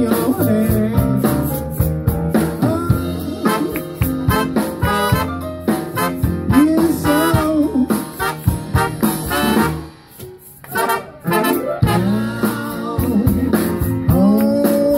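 A live blues band with a horn section of saxophone, trombone and trumpet, backed by guitar, upright bass and drums, playing an instrumental passage. The band drops out briefly about ten seconds in, then comes back in together.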